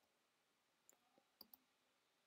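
Near silence, with a few very faint clicks about a second in.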